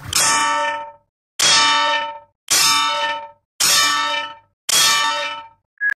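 A loud metallic clang sound effect, repeated five times about once a second. Each identical strike rings out for nearly a second and then cuts off to silence.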